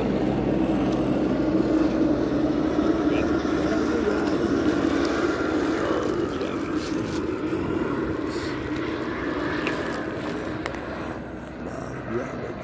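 A steady engine drone passing by, loudest in the first half and slowly fading near the end.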